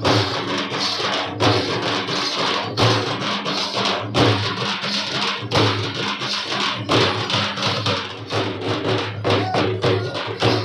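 Percussion-led Gondi Dandar dance music: drums with a strong beat about every one and a half seconds over continuous busy percussion.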